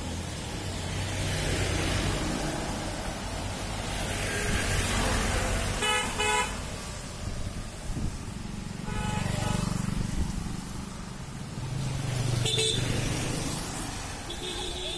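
Road traffic passing close by: engine rumble and tyre noise, with vehicle horns honking. There are two short toots about six seconds in, a longer honk around nine seconds, and another toot near the end.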